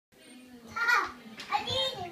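Toddlers' voices: two short high-pitched calls, the louder one about a second in.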